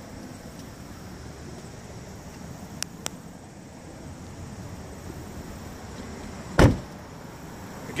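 A car door, a 2016 Chevy Malibu's front door, shut with a single heavy thump about two-thirds of the way in, over steady background noise. Two faint clicks come a few seconds earlier.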